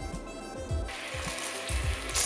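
Background music with a low beat. From about a second in, a steady hiss joins it: coconut milk bubbling and sizzling in a steel pot as it is cooked down to render coconut oil.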